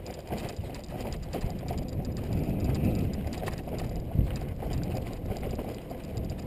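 Mountain bike rolling fast over a dirt trail: tyres on dirt and loose gravel with the bike rattling and clicking over the bumps, and one sharp knock about four seconds in.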